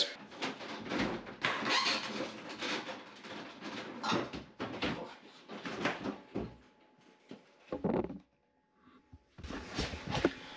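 Handling noise from a tumble dryer being pulled and lifted off a stacking frame on a washing machine: irregular scrapes, knocks and rustles, dropping away to near nothing for about a second before picking up again just before the end.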